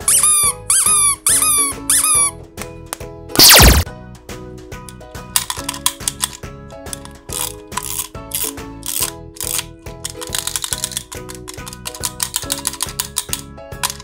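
A rubber squeaky ball toy squeezed four times in quick succession, each squeeze giving a high squeak, over background music with a steady beat. A loud downward-sliding sound follows about three and a half seconds in, and in the last few seconds a fast run of clicks comes from winding a wind-up chattering-teeth toy.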